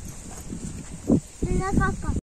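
Soft rustling and handling noise as groundnut plants are pulled from the soil, with a short knock about a second in. In the last half-second a brief high-pitched voice calls out.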